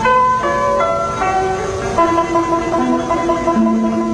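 Background instrumental music: a slow melody of held notes, changing pitch every second or so.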